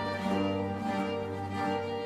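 Early-Baroque string ensemble playing sustained chords over a held bass note.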